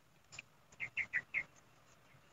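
A small bird chirping faintly, four quick high chirps in a row about a second in.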